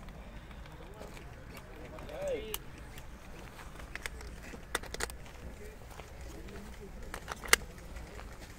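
A few sharp plastic clicks from an airsoft pistol and its polymer belt holster being handled, the loudest near the end as the pistol is seated in the holster.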